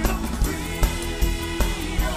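Gospel worship team singing live with a band: a long held sung note over a steady drum beat.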